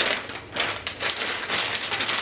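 Plastic packaging crinkling and rustling as it is handled, a dense run of irregular crackles.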